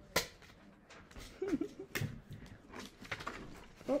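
Metal three-ring binder rings clicking as they are opened and snapped shut: one sharp click just after the start, then several more in the second half, with paper pages being handled.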